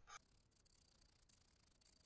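One last short stroke of a hand scraper along the edge of an ebony fingerboard, right at the start, then near silence: room tone.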